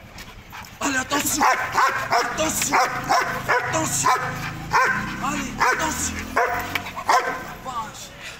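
Belgian Malinois barking in a rapid run of short barks, about two a second, starting about a second in.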